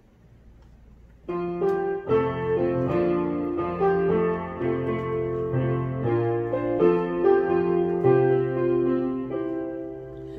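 Piano introduction to a hymn: sustained chords over a slow, stepping bass line, starting suddenly about a second in after near-quiet room tone.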